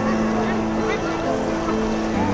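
Background music of sustained low notes that step from one pitch to another every half second or so.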